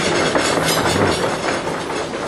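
Audience cheering and making a loud, sustained noise as its vote for answer B in a 'decibel test', where the loudest response marks the majority answer.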